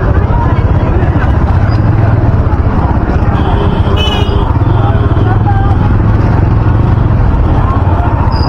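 Motorcycle riding slowly through a busy street: a steady low engine and wind rumble on the helmet or bike microphone, with the chatter of people nearby. A brief high wavering tone sounds about four seconds in.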